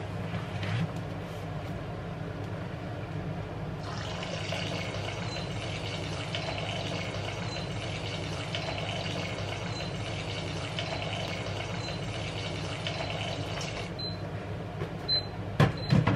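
Red wine pouring in a steady stream from the tap of a bag-in-box into a cooking pot. It starts about four seconds in and stops about ten seconds later, over a steady low hum.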